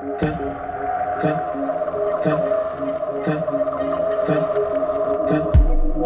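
Electronic music played through a large stacked outdoor sound system on a sound check: a long sustained synth tone over a beat about once a second, with heavy deep bass kicks coming in near the end.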